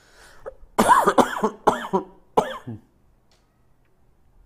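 A man coughs four times in quick succession, starting about a second in.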